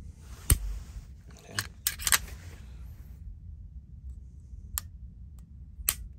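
Unloaded Walther Q4 SF pistol being dry-fired: a sharp click as the trigger breaks about half a second in, then a quick cluster of lighter clicks and two more single clicks near the end as the trigger and action are worked and the trigger resets.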